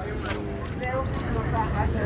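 SUV engines running as the vehicles roll slowly past one after another, a steady low rumble that swells a little about a second in, with people talking around them.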